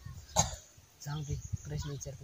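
A single short cough about half a second in, followed by a voice speaking.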